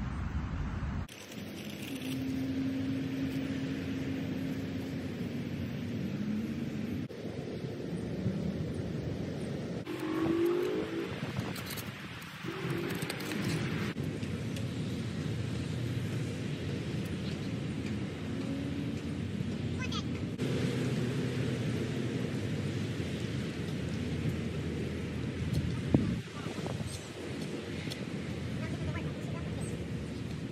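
Outdoor roadside noise of passing traffic and wind, with faint voices and the scrape and chop of digging tools working soil; one sharp knock late on.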